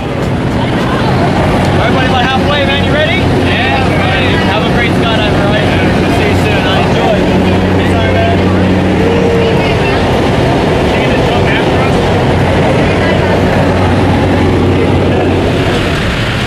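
Light propeller plane's engine and rushing air heard inside the cabin: a loud, steady drone with a low hum. Raised voices call out over it during the first half.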